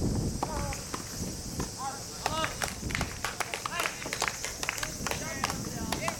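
Outdoor tennis court ambience: scattered distant shouts and calls, sharp knocks of tennis balls being struck and bouncing on neighbouring courts, over a steady high-pitched hiss.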